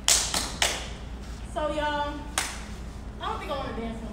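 Four sharp claps or stomps, three quickly in the first second and one more about two and a half seconds in, with two short shouted voice calls between them.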